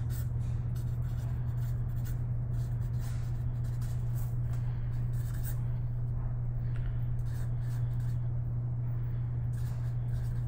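Felt-tip marker scratching on a sheet of paper in short strokes as letters are written, over a steady low hum.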